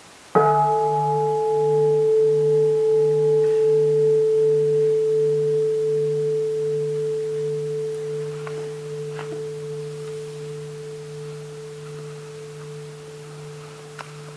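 A Buddhist bowl bell struck once, ringing on with a long, slowly fading tone that wavers gently in loudness.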